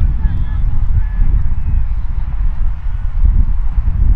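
Wind buffeting an outdoor microphone, a loud, unsteady low rumble, with a few faint short calls in the first second.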